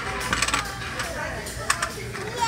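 Clatter of small hard objects: a quick cluster of sharp clicks about half a second in and a couple more near the end, over background chatter and hum.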